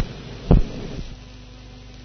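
Faint steady electrical hum and hiss of the recording, with a single short low thump about half a second in.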